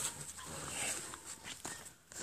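Dry fallen leaves rustling and crackling as two puppies tussle and tug at a toy in them.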